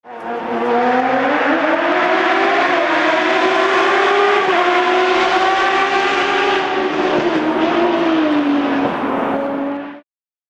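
A racing car engine running at high revs, its pitch drifting slowly up and down. It starts and cuts off abruptly.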